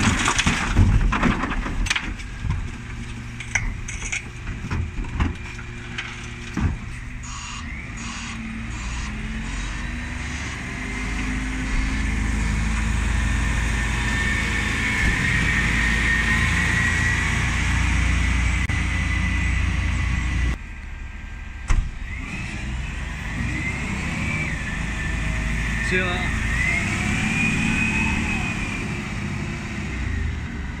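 Refuse lorry's rear bin lift tipping wheelie bins, with several sharp plastic-and-metal knocks in the first few seconds. Then the diesel lorry pulls away, its engine rumble swelling as it passes close by, and it carries on driving off.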